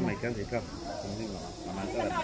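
People talking at a low level, without singing.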